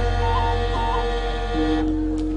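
Javanese gamelan accompaniment holding several steady, ringing tones over a low hum, with a few short flicks in pitch and a new lower note coming in near the end.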